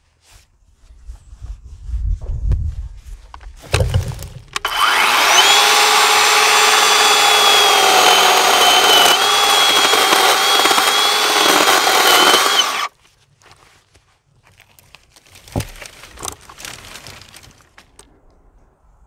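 WORX 40V battery-powered electric chainsaw running for about eight seconds, cutting through thin brush shoots with a steady, level whine, then stopping suddenly. Before it starts there is a low rumble and a knock.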